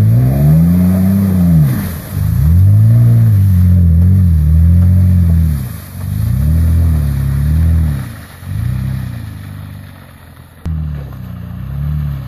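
Lifted Toyota Tacoma pickup's engine revving up and down in several surges as it pushes through deep mud, growing fainter as the truck pulls away near the end.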